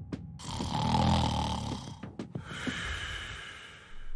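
A sleeping man snoring: one loud buzzing snore lasting about a second and a half, then a long, quieter breathy exhale.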